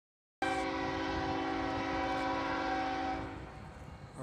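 Freight locomotive air horn sounding one long chord blast of about three seconds, then fading away.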